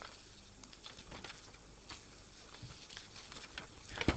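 Faint rustling and soft ticks of paper sheets being leafed through and picked up.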